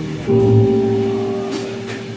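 Live jazz trio of electric keyboard, upright bass and drums playing a slow ballad: a chord with a low bass note is struck about a quarter second in and held, fading, between sung lines.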